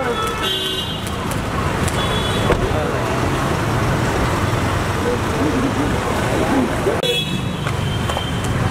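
Street traffic noise with a car engine running steadily beside the microphone. Short car-horn toots sound about half a second in, again about two seconds in, and just before the end, with voices calling out in the mix.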